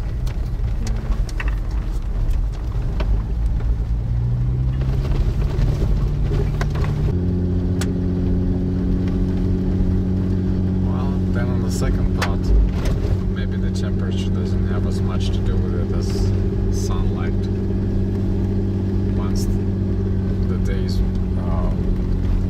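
Toyota Land Cruiser engine and tyre noise heard from inside the cab while driving on a dirt road. The engine pitch climbs over the first several seconds, then about seven seconds in it changes abruptly to a steady hum, with light clicks and rattles from the rough road.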